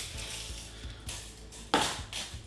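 Steel tape measure blade being pulled out of its case and stretched, with a short scraping rattle near the end.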